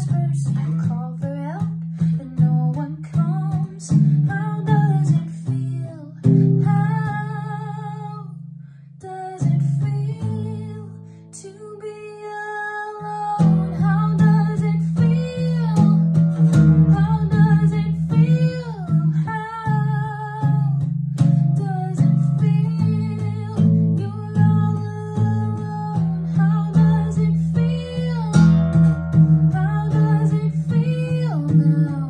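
A woman singing to her own strummed acoustic guitar, dipping briefly in loudness about eight or nine seconds in before the strumming picks back up.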